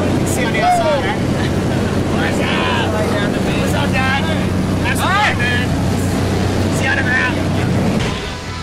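Small jump plane's engine droning steadily, heard inside the cabin during the climb, with people's voices calling out over it several times.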